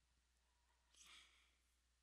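Near silence: faint room tone, with a very faint short noise about a second in.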